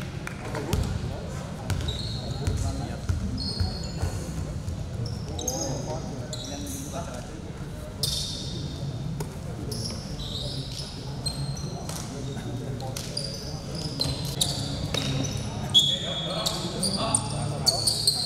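Basketball bouncing on a hardwood gym floor, with short high squeaks of sneakers on the court and players' voices echoing in the hall.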